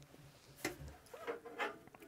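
Quiet handling of a metal network-switch case on a desk: one sharp knock about two-thirds of a second in, then a few faint clicks and rubbing as the case is turned around.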